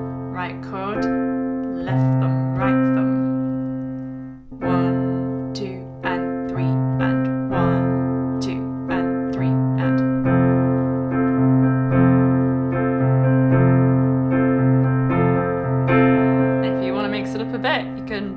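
Piano playing a repeated F major chord pattern: a low F–C fifth in the left hand under a C–F–A chord in the right, struck again and again in a rhythm that imitates guitar strumming, with the notes ringing on between strikes.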